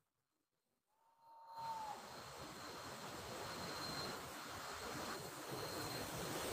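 Dead silence, then about a second and a half in a faint steady hiss of background noise begins, with a thin high tone running through it and a brief whistle-like tone near its start.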